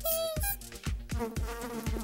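Housefly buzzing sound effect, a wavering drone that comes in about half a second in, over background music with a steady beat.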